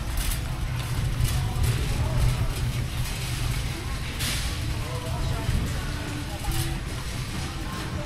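A shopping cart rolling steadily over a concrete warehouse floor, its wheels making a continuous low rumble, with indistinct shoppers' voices around it. A short hiss comes about four seconds in.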